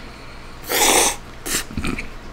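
A person slurping spaghetti: one long slurp a little under a second in, then a brief second slurp.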